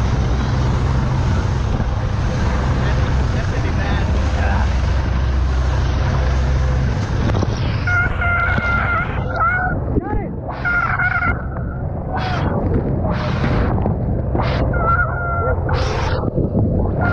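A small boat running at speed through spray: engine rumble, rushing water and wind on the microphone. The low rumble drops away about seven seconds in, and from then on there are repeated shouts.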